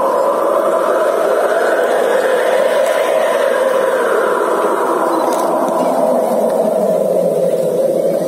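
A loud, steady rushing noise that swells a little a second or two in and eases off again.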